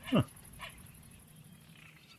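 A short, loud sound effect that drops steeply in pitch, followed by a fainter one about half a second later.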